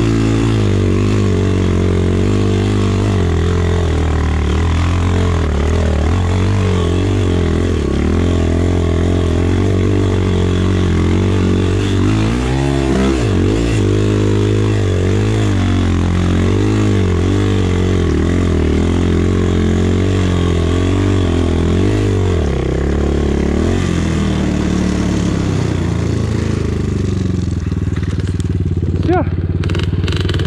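250 cc Chinese enduro motorcycle engine held in first gear while climbing a snowy hill, its revs rising and falling with the throttle; the bike cannot go higher than first because its gear-shift lever is broken. The engine eases off into a steadier, lower run in the last few seconds.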